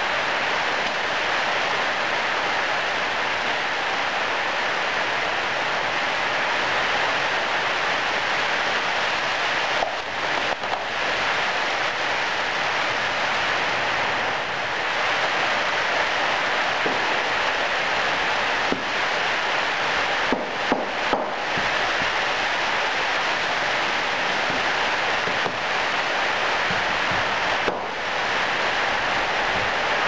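Heavy rain as a loud steady hiss, with a few scattered knocks of sand being packed and tamped into a moulding box.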